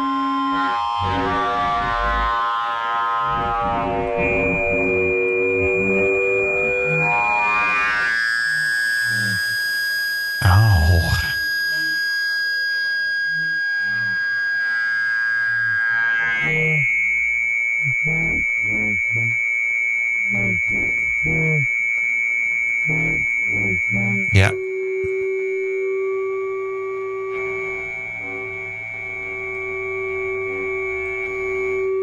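Ableton Live's Roar distortion feeding back into itself through its delay-time feedback: sustained synthetic whining tones with many overtones that jump to new pitches every few seconds as the feedback time is changed. About ten seconds in there is a heavy swooping burst, then a stretch of rhythmic pulsing, and a sharp click just before the tone drops to a lower steady pitch.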